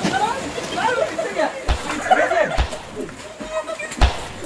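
Several people shouting and chattering excitedly over one another, with a couple of dull thumps about halfway through.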